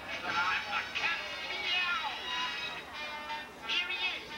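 A stage show's music playing through a sound system, with a high-pitched, cartoon-like voice sliding up and down over it.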